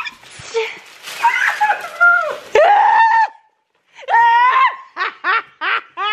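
High-pitched laughter in quick repeated bursts, about three a second, through the second half, after a stretch of voices.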